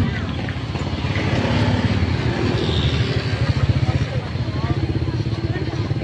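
Small motorbike engine running close by, its rapid putter growing louder toward the middle, with people talking nearby.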